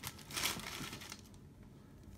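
Rustle of a baseball-card pack's wrapper and cards being handled: a short crinkle in the first half second or so, then faint.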